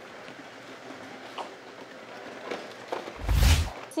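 Faint room noise with a few light clicks as items are packed into a cardboard box, then a short loud burst of noise with a deep thump about three seconds in, lasting about half a second.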